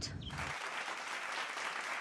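A crowd clapping and applauding, coming in about half a second in and holding steady.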